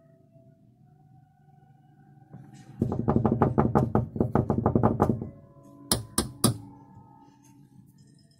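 A rapid run of about a dozen knocks over two seconds, then three sharp taps in quick succession.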